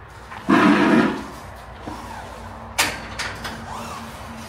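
Construction work noise: a loud rough scrape lasting about half a second, then a single sharp knock near the end.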